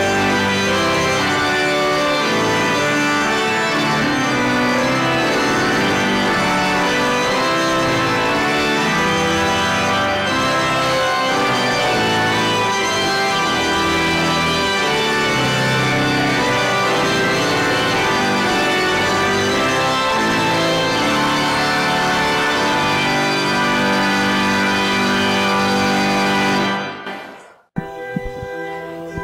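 Organ playing slow, sustained chords that change every second or so. The music drops away suddenly about a second before the end, where the cassette recording breaks off.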